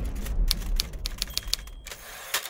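Typewriter sound effect: a quick run of sharp key clacks, several a second, as on-screen text is typed out letter by letter. The clacks thin out toward the end, over a low rumble that fades away.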